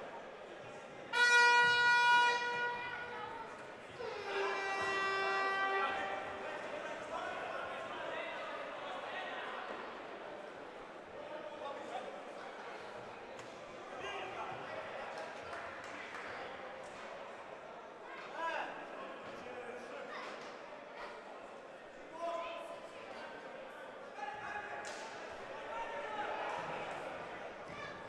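A horn blown twice in a large indoor hall: a long steady blast about a second in, then a second, lower blast a few seconds later. Echoing hall noise of the match follows, with occasional ball strikes and brief shouts.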